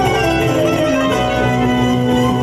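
Traditional Aegean folk dance music of the zeybek kind: held melody notes, string-like, over a steady low beat.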